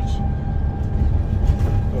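Double-decker bus in motion, heard from inside the passenger deck: a steady low engine and road rumble with a thin, steady whine running through it.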